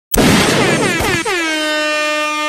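Loud DJ air-horn-style sound effect opening a hip hop mixtape track: a horn tone that swoops down in pitch about four times in quick succession, then holds one steady note.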